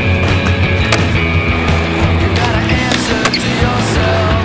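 Rock music soundtrack with a skateboard's wheels rolling and its board clacking on concrete mixed in, marked by several sharp clacks.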